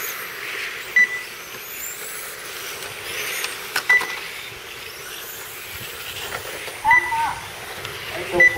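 Radio-controlled electric touring cars racing: thin high motor whines rise and fall as the cars pass. Three short electronic beeps, about three seconds apart, come from the lap-counting system as cars cross the timing line.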